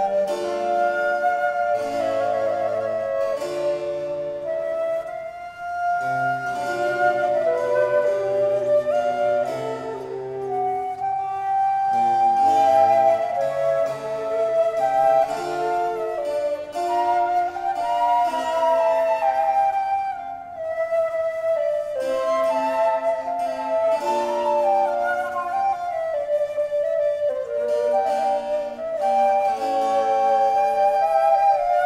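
Two baroque transverse flutes (flauto traverso) playing interweaving melodic lines over a basso continuo of harpsichord and viola da gamba. The instruments are period instruments tuned low, at a=396.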